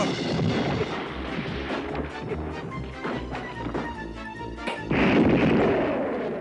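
Cartoon scuffle and crash sound effects over background music, with repeated low thuds and a loud crash about five seconds in.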